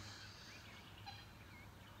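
Near silence: quiet outdoor ambience with a few faint, short bird calls.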